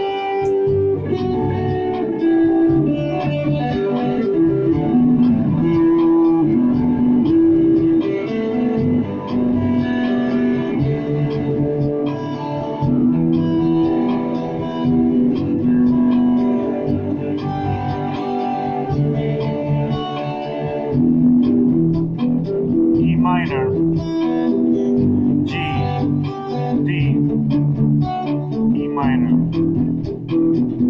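Ibanez SZ320 electric guitar played through a Roland Micro Cube amp: an unbroken stretch of jammed melodic lines, with notes changing every fraction of a second and some held longer.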